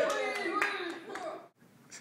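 A small audience clapping a few times, with scattered voices, dying away about a second and a half in; then near silence.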